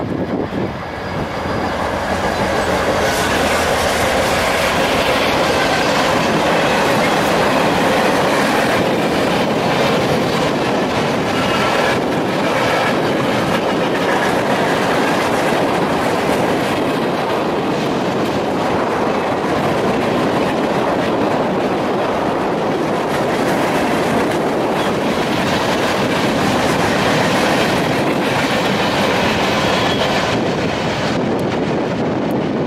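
Freight train of boxcars rolling past close by: a steady, loud rumble and clatter of steel wheels on rail that builds over the first couple of seconds as the train arrives.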